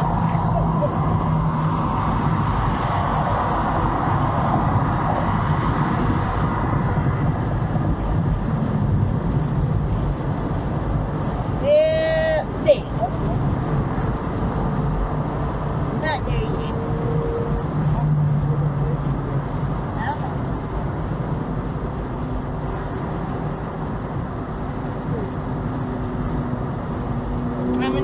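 Steady road and tyre noise inside a car cabin at freeway speed, with faint voices under it. About twelve seconds in comes a brief high-pitched sound, followed by a sharp click.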